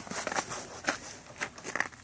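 Canvas UTV enclosure's entry door being handled and opened: crinkling fabric with an irregular run of clicks, the sharpest about a second in and near the end.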